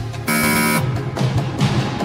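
Game-show background music with a steady beat, over which a loud, harsh electronic buzzer tone sounds for about half a second just after the start: the show's cue for a passed answer. A short hiss-like swoosh follows near the end.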